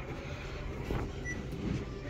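Steady low background noise of a shop interior.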